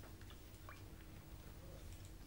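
Near silence: faint room hum with a few soft clicks of a glass beaker being picked up and tilted on the bench.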